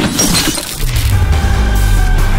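Trailer sound design: a loud crash with a shattering, breaking-glass tail hits at the start. Heavy, bass-laden music kicks in just under a second later.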